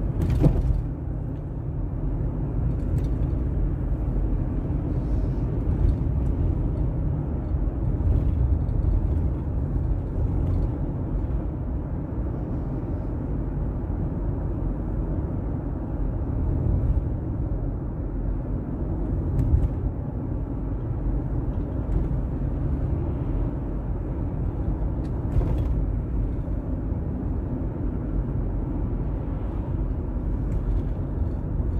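Steady low road and engine noise heard from inside a moving car's cabin. There is a brief knock about half a second in.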